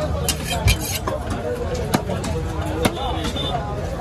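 A knife chopping pieces of fish on a wooden chopping block: about four sharp strikes, unevenly spaced, over background chatter of voices and a low steady rumble.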